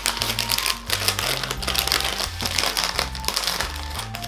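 Plastic marshmallow bag crinkling in a dense run of crackles as it is pulled open and rummaged through, over background music with a bass line.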